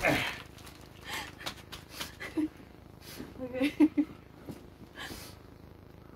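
A woman laughing in short, breathy bursts, the loudest near the middle.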